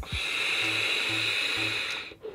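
Air drawn through a vape tank's airflow ring during one long inhale on a Wake Mod Bigfoot: a steady, smooth hiss with two high whistling tones in it, lasting nearly two seconds and cutting off at the end.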